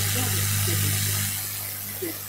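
Steady low electrical hum with a hiss from the microphone and sound system, easing off slightly in the second second.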